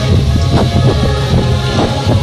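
Loud stage music played over a concert sound system: a dance track with heavy bass and a steady beat.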